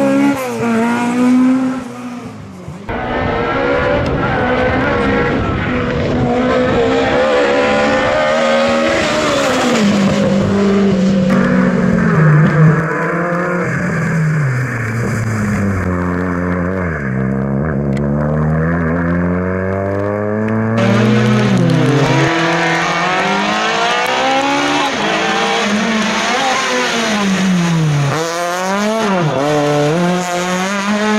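Rally car engines driven hard through a bend one after another, first a Ford Escort Mk1, later a Peugeot 106 and a Citroën C2. Each engine's pitch climbs under full throttle and drops sharply on lifts and downshifts. The sound changes abruptly several times as one car gives way to the next.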